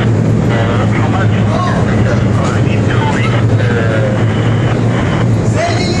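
Steady low hum of a ship's machinery running on deck, with voices of people talking over it.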